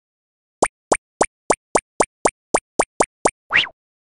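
Cartoon sound effects of an animated logo intro: a quick run of eleven identical plops, coming slightly faster toward the end, then one short sound sliding upward in pitch.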